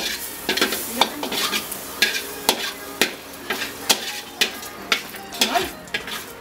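Metal spatula scraping and knocking against a metal wok about two to three times a second, over butter sizzling in the pan. The butter is scorching black.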